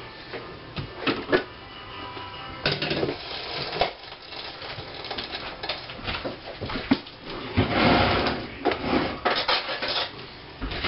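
Kitchen utensils and dishes being handled: a run of clinks, knocks and rubbing, with a louder rushing, scraping noise lasting about a second roughly two-thirds of the way through.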